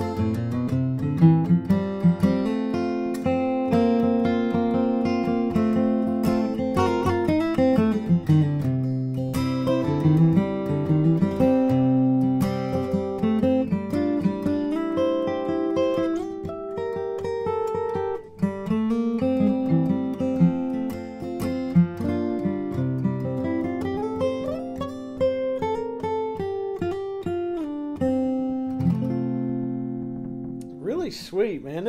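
Bourgeois DB Signature dreadnought acoustic guitar, with an Adirondack spruce top and Madagascar rosewood back and sides, played solo. The playing mixes strummed chords with single-note runs and moving bass notes, with a brief break about eighteen seconds in.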